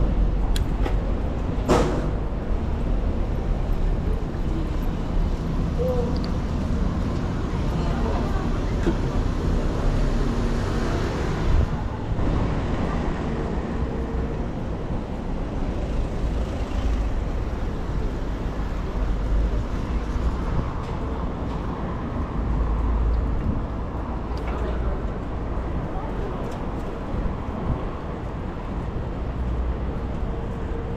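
Wind buffeting a GoPro action camera's microphone on a moving bicycle, a steady low rumble over city street and traffic noise, with a sharp click about two seconds in.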